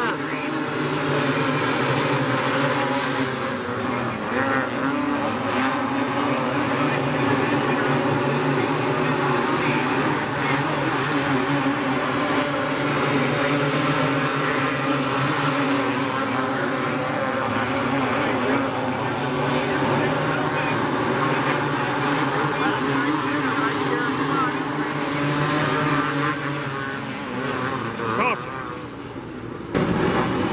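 A pack of winged outlaw karts racing on a dirt oval, several small engines running hard at once in a steady, dense drone. The engine noise thins out near the end.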